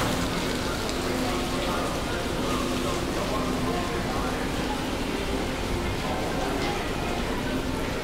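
Steady, even hiss of water spraying and splashing from a water park's fountains and slides.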